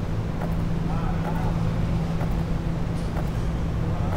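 A steady low hum, with faint footsteps and a few faint, brief sounds that PANN takes for voices.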